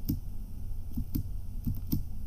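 Computer keyboard space bar pressed about six times at an uneven pace, sharp plastic key clicks. Each press works a switch in a circuit simulation to clock a ring counter one step.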